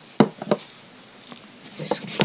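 Two short sharp clicks about a third of a second apart, from a hard plastic nail-stamping scraper being picked up and set against a metal stamping plate.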